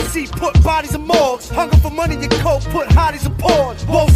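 Hip hop track: a rapper delivering a fast verse over a beat with a deep, sustained bass line and heavy kick drum.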